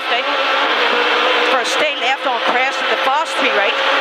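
Rally car engine at full throttle, heard from inside the cabin, its revs sweeping up and down again and again as it accelerates along a straight and shifts gear.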